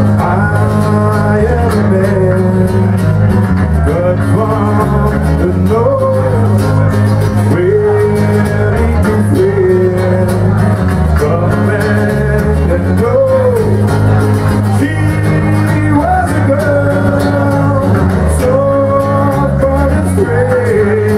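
Rock band playing live, with electric guitar, bass guitar and drums and a singer's voice over them, loud and steady.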